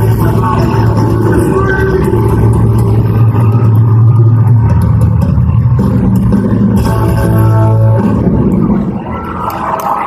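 Live country band playing loud through the venue's PA, with a steady held bass note and sustained guitar chords. The music falls away about nine seconds in.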